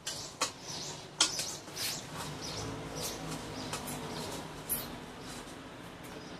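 Scattered small metallic clicks and scrapes as screws are worked loose from the rusted sheet-steel top of a small gas forge.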